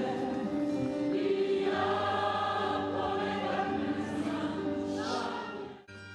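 Choir of opera singers singing together in long, held chords, several voices at once. The singing cuts off abruptly near the end.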